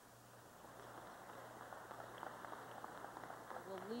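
Crowd applauding, building in loudness over a few seconds.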